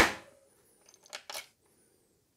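Removable e-bike battery being pushed into the frame's down tube: a sharp knock at the start, then a few faint clicks and a light scrape about a second in as it seats.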